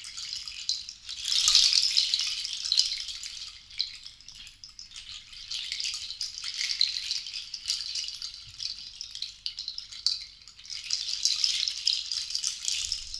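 Cluster rattle of dried seed pods shaken by hand, a dense, dry clatter that swells and eases in waves: loudest about a second and a half in, softer near the middle, then building again toward the end.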